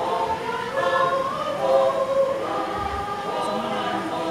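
A choir singing, many voices together holding long notes.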